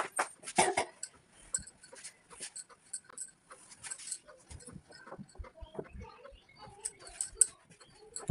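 Rustling and soft knocks of a heavy blanket being shaken out and folded, with a few short whining sounds.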